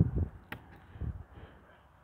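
Metal hook latch and door of a small wooden book-exchange box being handled: one sharp click about half a second in, then a softer knock about a second in.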